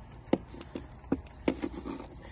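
A few sharp, irregular knocks and taps, about five in two seconds, from gloved hands working a PVA tube loaded with crab bait against a wooden tray.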